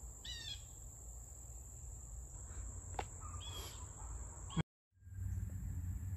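Steady high-pitched insect drone over a low rumble, with a few faint short chirps. The sound cuts out for a moment about three-quarters of the way through, then resumes with the rumble louder.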